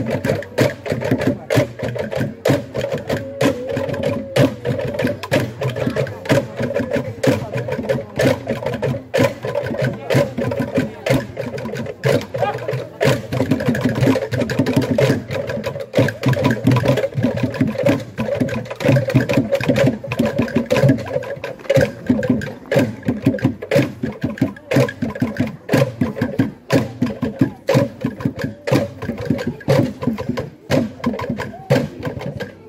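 Music for the Langoron dance: a group of voices chanting together over a quick, even beat of struck percussion.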